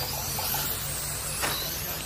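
Radio-controlled dirt oval late model race cars running laps, their motors giving a high-pitched whine that rises and falls as the cars pass. There is a brief tap about one and a half seconds in.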